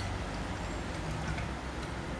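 Quiet room noise with a steady low hum and a few faint ticks from a pink plastic tumbler being handled and raised to the mouth.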